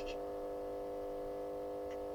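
A steady electrical hum: a buzz of several even tones held unchanged, with nothing else sounding.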